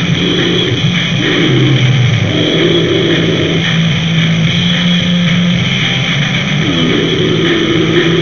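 Harsh, lo-fi noisegore music: a dense wall of distorted noise over a steady low drone, loud throughout. A low warbling sound rides on top and glides up in pitch near the end.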